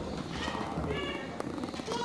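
Low, murmured speech in a large wood-panelled hall, quieter than the talk around it, with a sharp knock about halfway through and a few lighter clicks after it.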